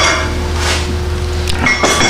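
Light metallic clinks from steel studs and tools being handled, over the steady hum of a shop fan.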